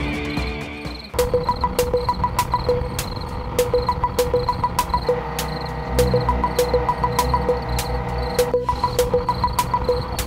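About a second in, the earlier music gives way to crickets chirping in steady trains. Under them runs background music: an even ticking beat, about three ticks a second, and short picked notes.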